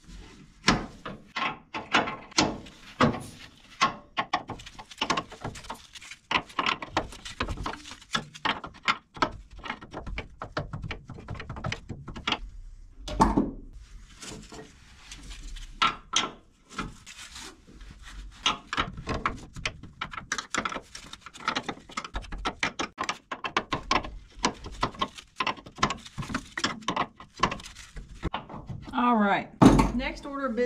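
Open-end wrench working the oil cooler line's flare nut at the radiator fitting: a long run of irregular metal clicks, knocks and scrapes as the wrench is turned and repositioned on the freshly threaded, partly seized nut.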